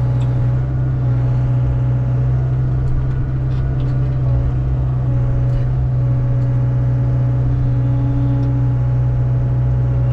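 Hyundai excavator's diesel engine running steadily at full throttle, heard from inside the cab, while the boom swings the grapple saw. A few faint ticks sound over the steady drone.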